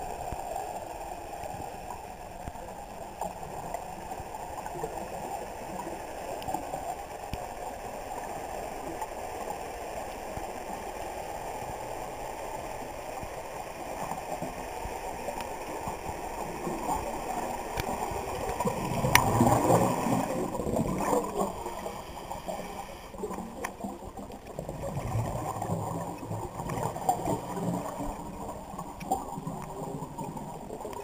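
Muffled underwater noise picked up by a camera in a waterproof housing: a steady low rush of water, with a sharp click about two-thirds of the way in followed by a louder swell of rushing lasting a couple of seconds, and another rise near the end.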